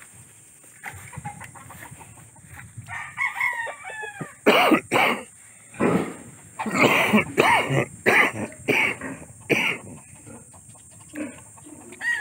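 Roosters crowing and chickens clucking, with a run of loud calls from about four to ten seconds in.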